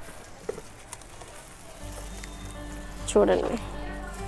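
Faint crackle and rustle of soil and roots as a clump of red onions is pulled out of a potted bed, with a few light clicks. Background music with held tones comes in about halfway.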